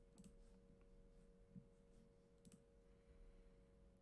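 Near silence: room tone with a faint steady hum and a few faint, brief clicks.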